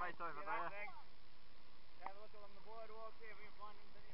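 Indistinct voices talking, in two stretches with a pause of about a second between, over a steady background hiss.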